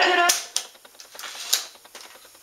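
Music playing from the 1979 Sony CFS-85S boombox's cassette deck cuts off with the click of a piano-key transport button. A few lighter mechanical clicks follow, then a sharper clack about a second and a half in.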